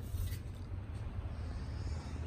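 Quiet room tone: a steady low hum with a faint even background noise and no distinct sounds.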